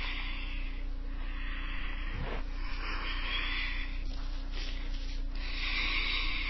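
Soft hissing breaths, three slow swells about two and a half seconds apart, over a steady low electrical hum.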